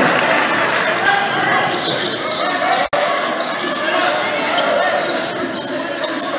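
Spectator crowd noise in a gymnasium, many voices talking and calling out at once, with a basketball being dribbled on the hardwood court. The sound cuts out for an instant about halfway through.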